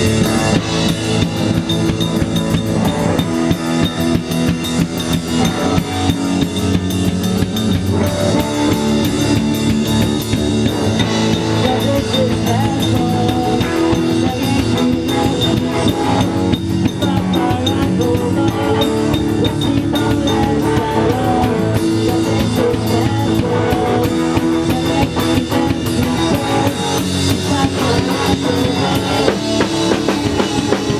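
A rock band playing live at close range: drum kit, electric guitar and electric bass, at a steady loud level.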